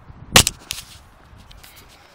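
Handling noise from a handheld camera being turned over: one sharp knock against its body about half a second in, then a softer knock and a few faint clicks.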